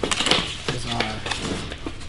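Small cardboard box being handled and its flap pulled open: cardboard rustling and scraping with a few sharp clicks near the start, and a voice murmuring briefly in the middle.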